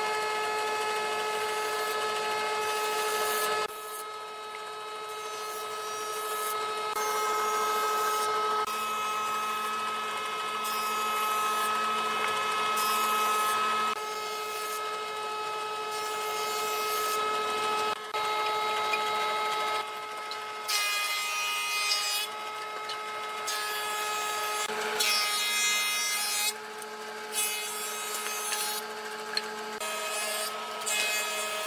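Combination jointer-planer running, its spinning cutterhead shaving boards fed over it: a steady whine with hissing cutting noise, changing abruptly every few seconds.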